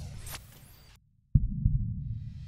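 Trailer sound design: deep, heartbeat-like low thumps with a swish near the start, fading out about a second in. After a brief silence, a sudden low hit starts the thumping again.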